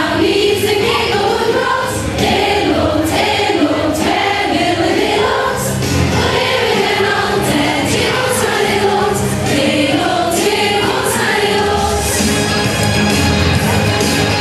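A large group of students singing together from lyric sheets, a mixed teenage choir in unison, over a regular beat of about two strokes a second.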